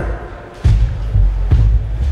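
Live blues band playing amplified: electric guitars, bass guitar and drum kit. The sound drops briefly about half a second in, then bass and drums come back in with several heavy low hits.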